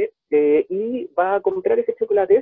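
Only speech: a man talking, his voice thin and cut off in the highs as over a video call.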